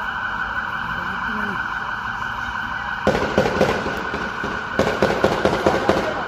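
A siren holding a steady high tone, with two bursts of rapid gunfire, the first about three seconds in and a louder one near the end.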